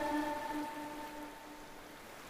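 The echo of a Quran reciter's last held note dying away, leaving a faint steady hiss.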